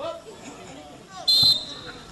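Referee's whistle blown once, a short, shrill blast about a second and a quarter in, with a ball kick thudding just after it.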